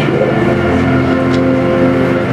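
A keyboard holding one steady, sustained chord, settling in about half a second in.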